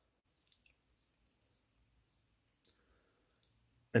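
Near silence broken by a few faint clicks, with one sharper click a little past halfway.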